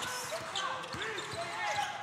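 Basketball court sounds: a ball being dribbled on the hardwood, with faint voices in the hall.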